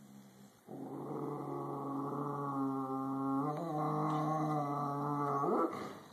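A dog growling one long, low, steady growl over her bone, a warning of resource guarding; it starts under a second in and rises in pitch just before it stops.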